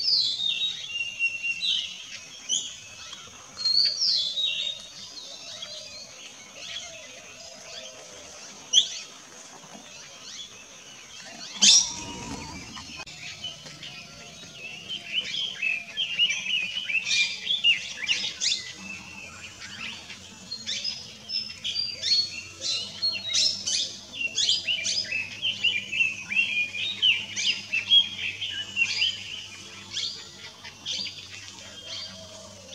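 Wild birds chirping and calling: short high chirps, scattered in the first half and then coming thick and fast from about fifteen seconds on, over a faint steady high hiss. A sharp click about twelve seconds in.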